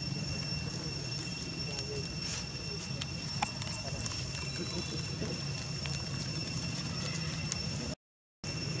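Outdoor ambience: a steady high insect drone held on two unchanging tones over a constant low hum, with a few light clicks and faint indistinct voices in the background.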